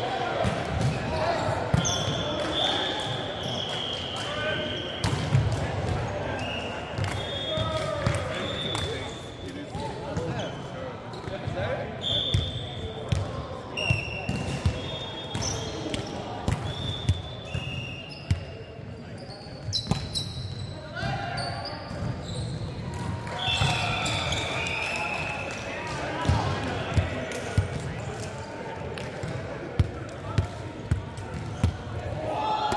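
Indoor volleyball play on a hardwood gym court: many short, high-pitched squeaks of sneakers on the floor, sharp slaps of the ball being hit and bouncing, and players' voices calling out.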